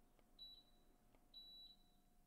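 Two faint, short, high electronic beeps about a second apart, the second a little longer than the first.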